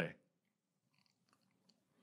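A man's spoken word ends, then near silence with a few faint small clicks.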